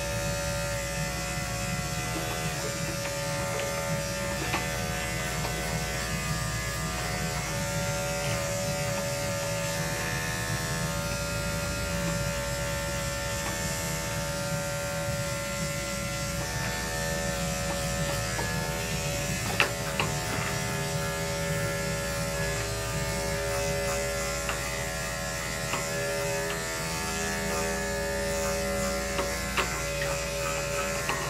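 Corded electric dog grooming clippers running with a steady buzz as they shave a shih tzu's coat. Two brief sharp clicks, one about two-thirds of the way through and one near the end.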